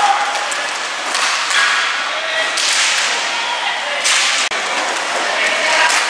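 Inline hockey play on a rink floor: repeated rushing, scraping noise of skates and sticks as players skate, with voices calling faintly underneath.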